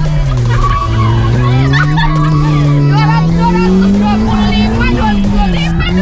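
Honda Brio hatchback engine heard from inside the cabin under hard driving. The note drops, then climbs steadily for several seconds and falls back near the end, with tyres squealing.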